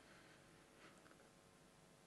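Near silence: room tone of a conference hall, with a faint soft sound a little under a second in.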